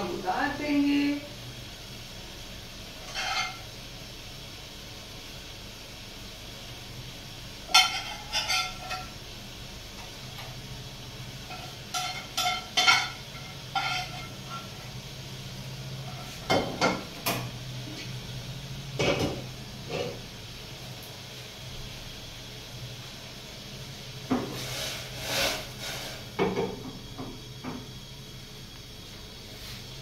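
Kitchen cookware handling: a pan, cooking utensils and plates knocking and clinking in scattered short bursts, over a low steady hum.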